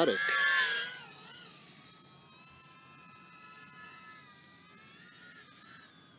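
Brushless micro quadcopter motors and two-inch props whining as the quad passes close, loud for about the first second. Then a fainter high whine of several pitches that waver together with the throttle.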